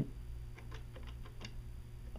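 A few faint, unevenly spaced clicks of buttons being pressed on a Digium D50 IP desk phone, over a low steady hum.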